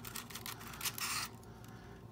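Light metal clicks and scraping of an HK 33/93 magazine's floorplate being worked loose by hand after its release button is pushed in with a punch; the clicking thins out a little past halfway.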